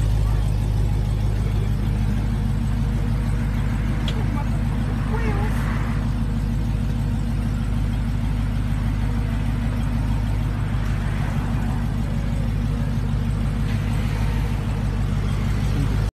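A vehicle engine idling steadily, a low even hum that does not rev or change, with faint voices in the background.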